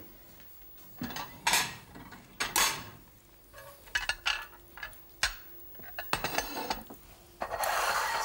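Kitchen clatter: ceramic plates clinking as they are lifted from a stack, and a knife and fork knocking and scraping on a plastic cutting board, as a string of separate clinks and knocks. The clatter grows louder and more continuous near the end.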